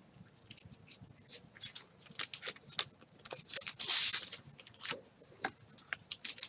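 Baseball cards and a plastic penny sleeve being handled on a desk: a run of light taps and rustles, with a longer rustle about four seconds in.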